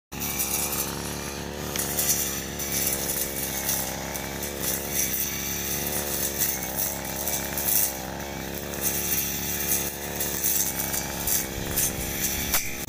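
Petrol brush cutter (grass trimmer) engine running steadily while cutting grass and weeds, its pitch wavering up and down as the head sweeps through the growth, with a hissing swish of cut grass over it.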